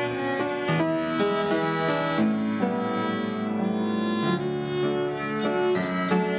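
A viola da gamba, bowed, and a fortepiano playing a piece of music together, with a steady run of changing notes.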